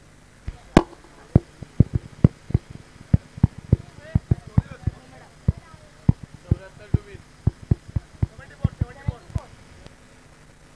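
An irregular run of about thirty sharp taps, some much louder than others, stopping just after nine seconds, with faint voices in the background.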